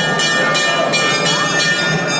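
Temple bells ringing continuously, struck about two to three times a second with a steady metallic ring between strikes.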